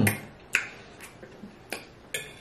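A few short sharp clicks and taps from eating at the table, spaced unevenly over the two seconds. The loudest comes about half a second in and another near the end.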